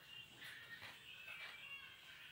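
A faint, high-pitched, wavering animal call, drawn out over about a second and a half.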